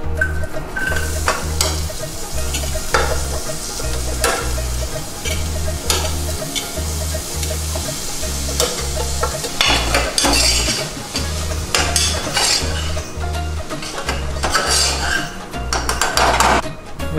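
Chopped onions, tomatoes and chillies sizzling as they are scraped with a metal spoon off a plate into hot mustard and sesame oil in a steel pot, with clinks of spoon on plate and pot. A steady bass beat from background music runs underneath.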